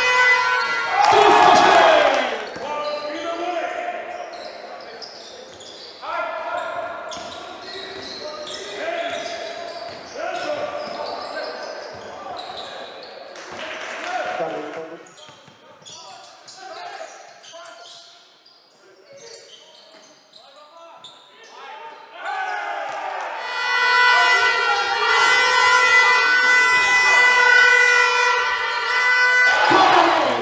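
Basketball game sound in a large sports hall: the ball bouncing and play going on, with voices. A loud, steady horn tone sounds at the start and again for the last several seconds.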